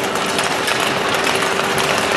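Many speed-skate blades scraping and scratching on the ice together as a large pack of skaters pushes off at a mass start, a dense rasping noise with a steady low tone underneath.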